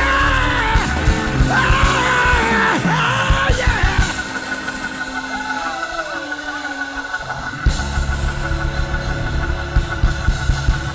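A church band playing loud, lively praise music, with a man yelling over it for the first four seconds. The bass and drums drop back in the middle, leaving a held note, then come back in strongly near the end.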